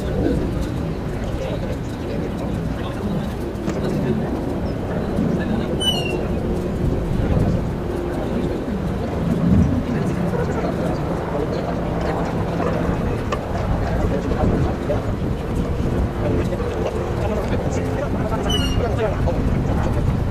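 Indistinct voices over steady outdoor noise, with two short high chirps, one about six seconds in and one near the end.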